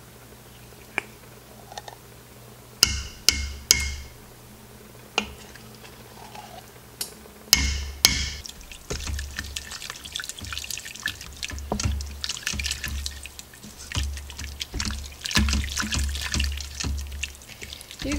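Tomato paste being knocked out of a small can into a stainless-steel Instant Pot insert: a few sharp taps with a brief metallic ring, in two groups. Then, from about halfway, a wooden spatula stirs and scrapes through the watery meat mixture against the steel pot, a steady run of wet scraping and small knocks.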